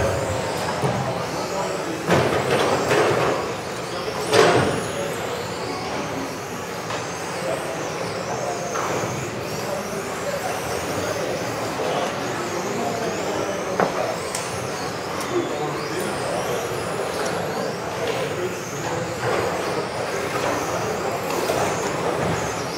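Several radio-controlled racing cars running on a hall track, with high motor whines rising and falling as they speed up and slow down over a steady echoing bed of tyre and motor noise. There is a sharp knock about four seconds in.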